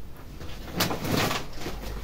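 A large crinkled kraft-paper shopping bag rustling and crackling as it is picked up and lifted, loudest about a second in.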